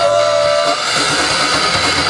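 Live rock band playing: electric guitars, bass and drum kit, with a held note breaking off under a second in and the band carrying on without singing.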